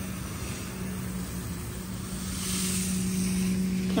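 Water hissing from a garden hose spray nozzle, growing louder about halfway through, over a steady low mechanical hum.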